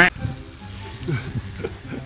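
An editing sound effect cut in with a colour-bars test card: a sharp, loud burst at the start, then low background music with faint voices.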